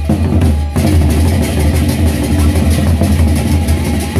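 Gendang beleq ensemble: large double-headed Sasak barrel drums struck with sticks and hands in a fast, dense rhythm, with cymbals clattering on top. The drumming eases for a moment under a second in, then comes back in fuller.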